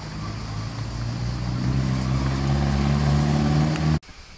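A passing car's engine growing steadily louder as it comes closer and accelerates, its low hum rising slightly in pitch. It stops abruptly at the end.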